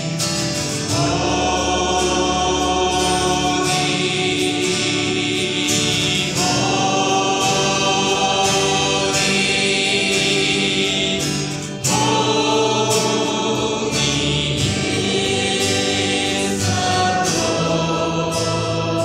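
Live church worship band: several mixed male and female voices singing a gospel song in harmony, with acoustic guitar, a second guitar and upright bass. New sung phrases begin about one, six and twelve seconds in.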